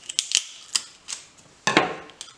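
Scissors snipping through sellotape: a few sharp clicks of the blades closing, then a short louder sound near the end.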